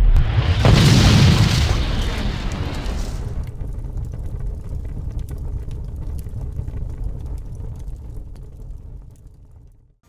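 Explosion sound effect: a loud blast about half a second in, followed by a low rumble that slowly fades out over several seconds.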